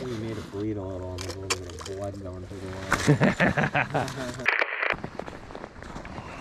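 A man's low voice held in a drawn-out hum for about two seconds, followed by a quick run of sharp crunching clicks.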